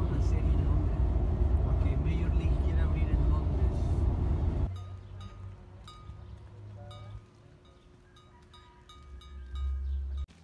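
Heavy wind buffeting and road rumble from riding in the open back of a pickup truck at highway speed, which cuts off about halfway through. A much quieter outdoor stretch follows, with a few short high-pitched clinks and a swell of low wind rumble near the end.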